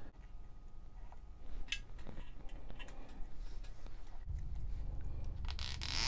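A nylon zip tie and a plastic ignition coil being handled, with a few faint clicks, then a short rasping burst near the end as the zip tie is pulled tight through its ratchet around the bicycle frame.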